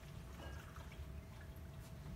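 Faint trickle of liquid being poured into a cup.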